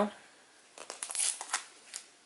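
Clear plastic comic book bags crinkling as bagged comics are handled and set down. It comes as a cluster of short crackling rustles lasting about a second, starting a little before the middle.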